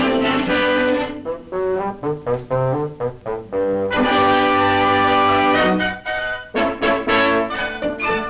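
Brass-led orchestral cartoon score: held chords alternating with runs of short, detached notes.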